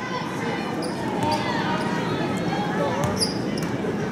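Basketball dribbled on a hardwood gym floor under a steady murmur of crowd voices, with a brief high squeak about three seconds in.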